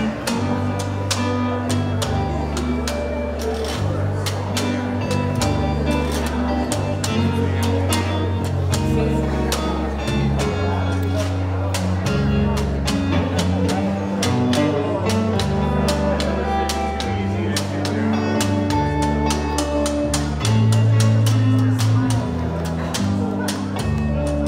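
Instrumental break of a country-western band with no singing: acoustic guitar, electric bass stepping through low held notes, and a washboard scraped and tapped in a steady rhythm.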